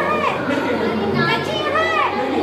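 Several voices talking at once in lively, overlapping chatter, with bright, high-pitched speaking.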